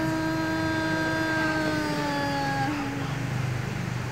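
A woman singing a Thái folk song (hát Thái) without accompaniment, holding one long note steady for nearly three seconds, then dipping slightly in pitch and fading out.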